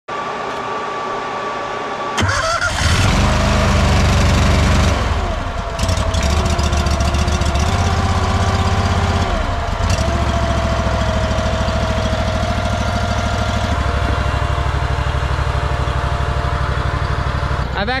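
The Honda gas engine on a walk-behind trencher is started with its key. It cranks for about two seconds, then catches and runs. Its speed shifts a little as the choke and throttle are set, and it then settles into a steady run.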